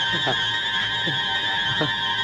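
Film soundtrack effect: a steady high electronic tone held throughout, with short falling-pitch sweeps repeating about every three-quarters of a second.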